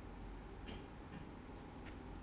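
Three faint, sharp clicks in two seconds over a low, steady room hum, fitting laptop keys being pressed to advance presentation slides.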